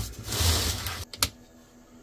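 Handling noise of jumper clamps and gear on a bench: about a second of rustling, then two sharp clicks in quick succession.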